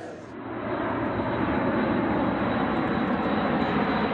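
Airbus A400M transport aircraft's four turboprop engines running as it flies over, a steady drone that swells in over the first second.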